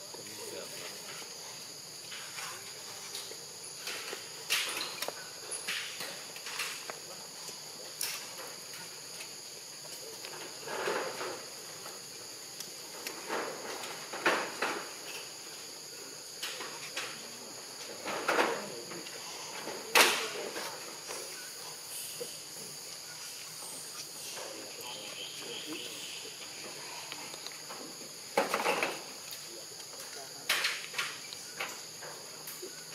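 Steady, high-pitched insect chorus, with scattered sharp clicks and short bursts of sound over it. The loudest click comes about two-thirds of the way through, and a cluster of bursts comes near the end.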